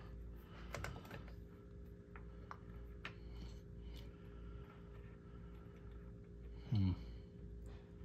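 Light metallic clicks and taps of small steel washers and a nut being handled and threaded by hand onto a ball joint stud, over a steady low hum. A brief vocal sound about seven seconds in.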